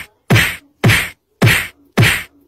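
A steady series of sharp whacks, about two a second, each one fading quickly into silence.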